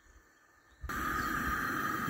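After a brief silence, a steady hiss starts about a second in: a gas stove burner heating a saucepan of water.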